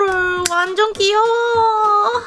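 Music: a high, child-like voice singing two long held notes over a steady light beat.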